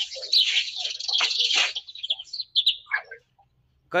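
Birds chirping busily, many short high-pitched calls overlapping for about three seconds before stopping.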